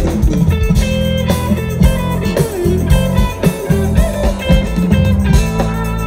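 Live band playing an instrumental funk-rock passage: electric guitar and bass guitar over a drum kit, with a few bending guitar notes a couple of seconds in.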